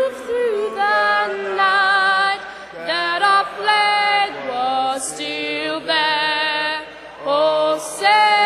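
A young girl singing a slow song into a microphone, in held notes with short breaks between phrases, while a man beside her and a large crowd sing along.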